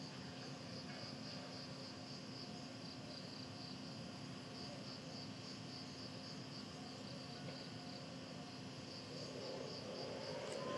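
Insects chirping in a steady pulsing rhythm, about three chirps a second, over a low background hum.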